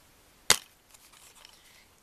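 A plastic DVD case snapping open: one sharp click about half a second in, followed by faint handling rustle.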